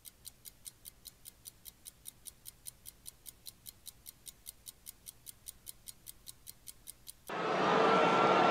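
Fast, even ticking of a countdown-timer sound effect, about five ticks a second, with nothing else under it. Near the end the ticking stops and a much louder rushing sound cuts in.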